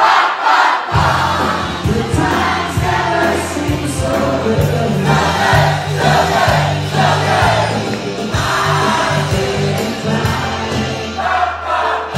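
Live band playing upbeat dance music, with a dance-floor crowd singing and shouting along over it. The bass drops out for about a second at the start, then comes back in.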